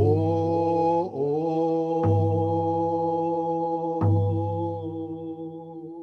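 A man singing a song in long held notes, sliding up to a new note about a second in, with a hand drum struck slowly, one deep beat about every two seconds.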